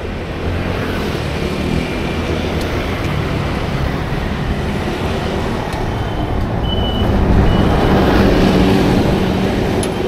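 City street traffic: engines running with a steady low rumble, swelling to its loudest about seven to nine seconds in as a heavy vehicle such as a bus comes close. A brief high thin tone sounds near the middle.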